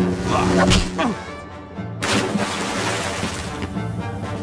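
A short shout, then a sudden crash with shattering about two seconds in, over steady action music.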